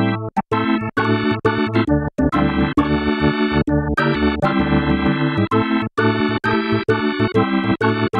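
Yamaha reface YC combo organ playing a rich blues-jazz organ sound in short chordal phrases, with all drawbars partly out and percussion adding a sharp click to the start of each chord.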